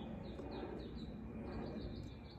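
A small bird chirping faintly in a string of short, high, falling chirps, a few spaced apart and then a quicker run near the end, over a steady low outdoor hum.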